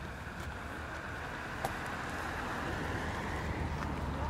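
Wind blowing across the microphone, a steady rumbling hiss that grows slightly louder.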